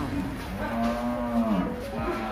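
A cow mooing: one long, low moo starts about half a second in, holds for about a second and drops in pitch as it ends, just after the falling tail of another moo.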